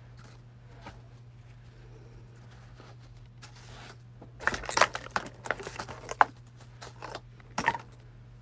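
Hands rummaging through and handling craft materials on a tabletop: a few faint rustles, then about four seconds in a dense run of loud crinkling, scraping rustles and sharp clicks lasting about three seconds. A low steady hum runs underneath.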